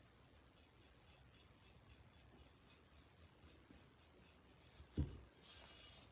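Paintbrush dry-brushing paint onto a ceramic turkey: faint, quick scratchy back-and-forth strokes, about four a second. A soft knock about five seconds in.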